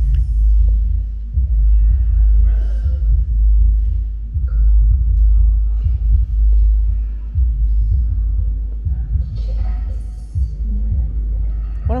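A loud, deep rumble that starts suddenly and holds unevenly throughout, with faint higher sounds over it.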